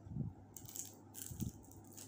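Close-up eating sounds: biting and chewing a piece of roast chicken, with two louder bites, one about a quarter second in and one about a second and a half in.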